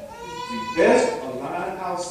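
A voice holding one long, steady tone for under a second, then a man preaching in animated speech.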